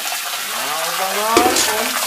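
Water jet of a trick fountain spraying up beneath a gilded crown and falling back as a steady hiss of spray, with a person talking over it. A single sharp knock about 1.4 seconds in.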